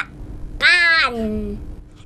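A young girl's drawn-out, high-pitched "kha" (ค่ะ, the Thai polite particle), a single long call of about a second that rises briefly and then slides down in pitch.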